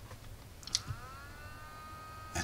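A short click, then a faint high electronic whine that glides down in pitch and settles into a steady tone: switching-regulator coil whine as the power comes on and a 55 W car bulb starts drawing current through the step-down converter.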